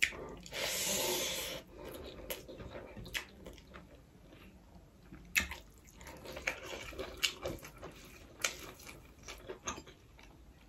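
Close-up wet eating sounds of rice and curry eaten by hand: squishing, chewing and lip smacks. Near the start there is a longer, hissing slurp-like sound lasting about a second, followed by many short irregular clicks.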